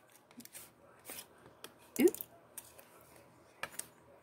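Clear plastic blister packaging of a nail stamper being handled, giving scattered light clicks and crackles, with a brief murmured voice sound about two seconds in.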